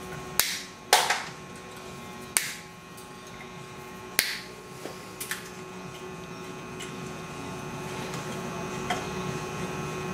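Diagonal side cutters snipping wire ends off the wire that binds a compressed door spring: five sharp snips spaced one to two seconds apart in the first five and a half seconds, then a faint click near the end.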